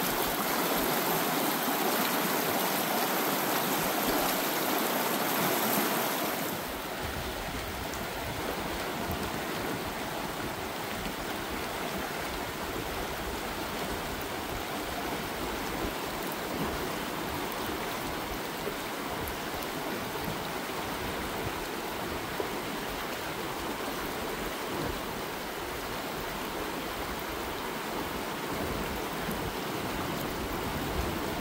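Small rocky mountain creek running over stones, a steady rush of water. It is louder and brighter for about the first six seconds, then drops to a softer, even level.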